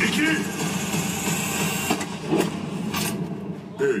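Turkish-dubbed film trailer soundtrack playing through a van's in-car entertainment system: a voice counting "iki… üç" over a dense, noisy bed of action sound effects with a few sharp hits in the middle.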